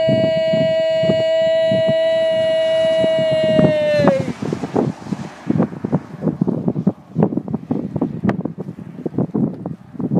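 A single long held note, high and steady with strong overtones, that sags slightly in pitch and stops about four seconds in. After it comes wind buffeting the microphone, with scattered knocks and rustles.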